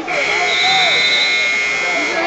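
Electronic buzzer sounding one steady, high tone for about two seconds, over the voices of the crowd.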